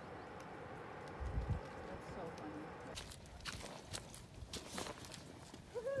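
Footsteps on a muddy dirt trail, faint: a low thud early on, then a run of sharp steps in the second half.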